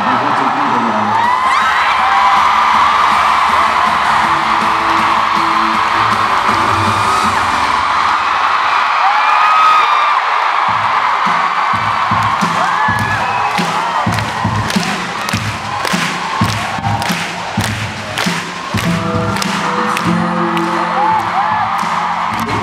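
Arena audience cheering, with many high screams and whoops, as music begins. From about halfway through, a rhythmic tapping beat of sharp, evenly spaced strikes comes in under the cheering.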